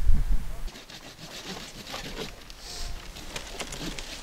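Wind rumbling on the microphone for under a second, then quiet outdoor ambience with faint scattered clicks and rustles.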